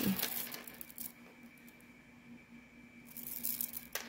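A long strand of faux glass pearls clicking and rattling against itself and a wooden tabletop as it is gathered up by hand. The clicking comes in two bouts, one in about the first second and one near the end.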